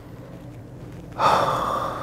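A man's sudden breathy gasp about a second in, trailing off slowly. He is tearing up and on the verge of crying.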